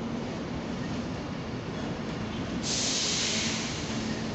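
Avanti West Coast Class 390 Pendolino electric train passing over the station tracks, a steady rumble with a faint hum. A loud burst of high hiss starts about two and a half seconds in and stops about a second later.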